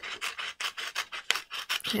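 Scissors cutting along a strip of printer paper: a quick run of short snips, several a second.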